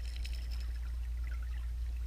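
Muffled, steady low rumble of water picked up by a camera submerged in a swimming pool, with faint scattered ticks.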